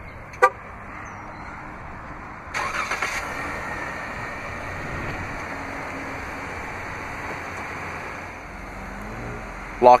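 A short horn chirp from the Jeep Grand Cherokee as it is remote-started from the key fob, then about two and a half seconds in its 3.6-litre Pentastar V6 cranks and catches, settling into a steady idle.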